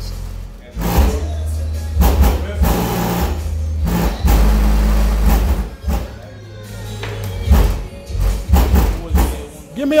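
A song played loud through a car audio system during a bass test. Deep bass notes are held for a second or two at a time and shift in pitch, with a brief drop in level past the middle.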